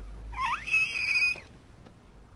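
A short high-pitched squeak that slides up and then holds for about a second before cutting off.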